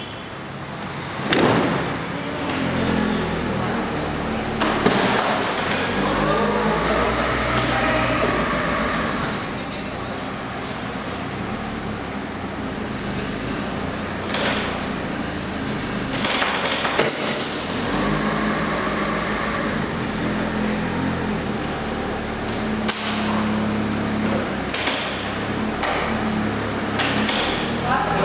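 Timber-framed plywood box knocking and creaking under strain: several sharp knocks spread out, with two longer drawn-out creaks and a low steady rumble.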